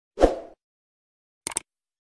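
Sound effects for a subscribe-button animation: a short pop that drops in pitch, then a quick double mouse click about a second and a half in.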